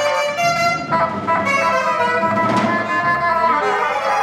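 Free-improvised jazz quartet playing live: alto saxophone and bassoon sounding overlapping held notes that shift in pitch, over double bass and drums.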